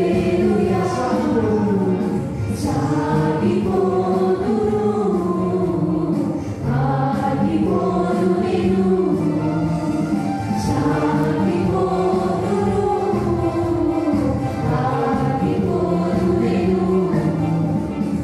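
A mixed group of young women and men singing a Telugu Christian song together through handheld microphones and a church sound system.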